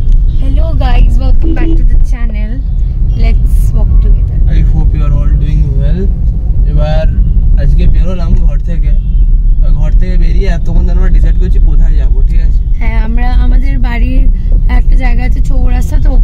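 Steady low rumble of a car being driven, heard from inside the cabin, with voices talking over it.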